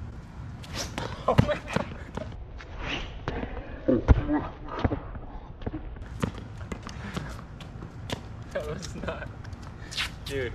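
Tennis racket striking the ball on a serve about a second and a half in, then a louder sharp thud about four seconds in, followed by fainter ball taps.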